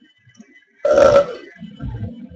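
A person's single short, loud vocal sound, like a burp, about a second in, lasting about half a second; a quieter low sound follows near the end.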